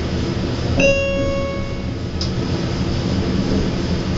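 Schindler elevator car travelling up with a steady low hum, and a single electronic floor-passing chime about a second in that rings out for about a second as the car passes a floor.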